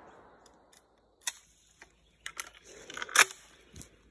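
The last of a 12-gauge shotgun shot's echo dies away, followed by a few scattered sharp clicks and knocks, the loudest about three seconds in.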